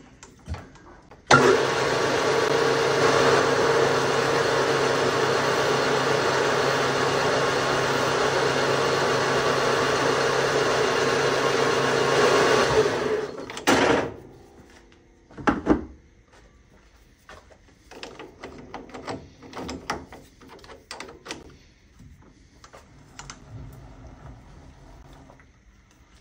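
Metal lathe running steadily for about twelve seconds while a small chamfer is turned on the part, starting and stopping abruptly. Several sharp knocks and light clicks of tools follow.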